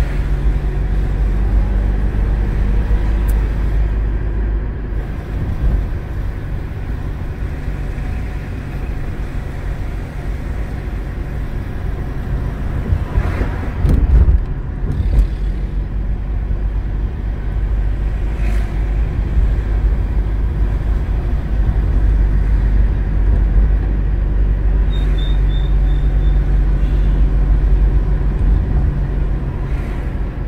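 A moving car's engine and road noise heard from inside the cabin: a steady low drone, with a brief louder rumble about halfway through.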